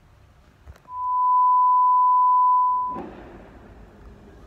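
A single steady, high-pitched electronic beep lasting about two seconds, starting about a second in and cutting off sharply. All other sound drops out beneath it: a bleep tone edited into the soundtrack.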